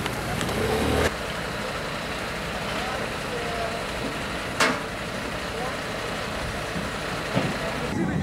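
Fire engine's diesel engine running steadily, with a sharp click about halfway through and faint voices in the background.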